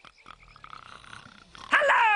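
Soft, rasping snoring from sleeping cartoon rats. Near the end a loud sliding sound falls in pitch.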